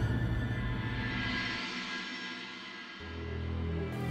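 Dramatic background score: a tense, held chord fades out, and a new low drone comes in about three seconds in.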